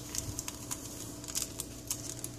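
A few light, scattered clicks and taps from small items being handled on a kitchen counter while a coffee drink is being made, over a low steady hum.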